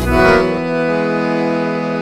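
Accordion-led dance-band music: the beat drops out and the accordion holds one long steady chord.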